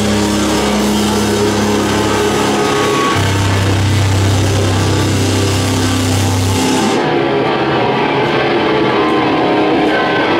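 Live metalcore band playing loud, distorted electric guitars and bass that hold long, low notes. About seven seconds in the cymbals stop and the guitars and bass ring on alone.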